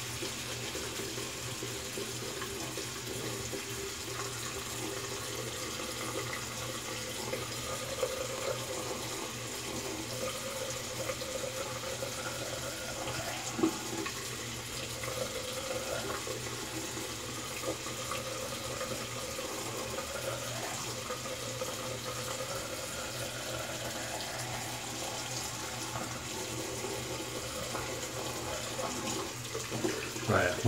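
Bathroom sink tap running steadily.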